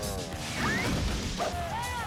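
Movie-trailer soundtrack: background music with a crash sound effect and short snatches of voices.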